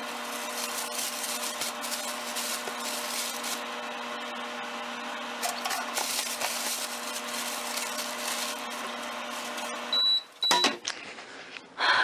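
Microwave oven running with a steady hum, which stops about ten seconds in and is followed by two short, high beeps as it finishes. A plastic bread bag crinkles in hand over the hum.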